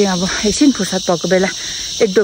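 Steady, high-pitched chorus of insects running continuously under a woman's talking voice.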